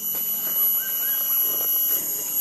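Forest insects droning in steady high-pitched tones, with a few faint short chirps about a second in.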